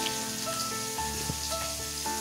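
Hot oil sizzling in a frying pan, a steady hiss, under soft background music whose held notes change about every second.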